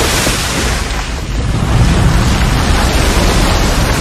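Loud, continuous rushing of a torrent of sand pouring down, with a deep rumble beneath it, as a tomb booby trap is sprung.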